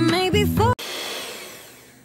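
Background music that cuts off abruptly about a third of the way in, followed by an electric kitchen mixer's whirring that fades away steadily as it winds down.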